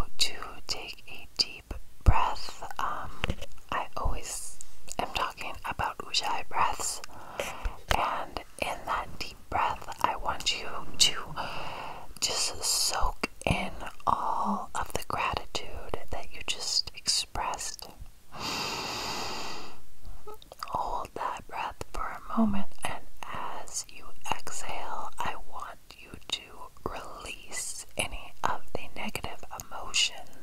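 Close-miked, unintelligible ASMR whispering in short broken phrases, with crisp mouth clicks between words and one longer hiss a little past halfway.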